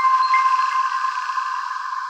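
The end of an electronic logo jingle: the beat stops and a held high synth tone with a hiss rings on, slowly fading.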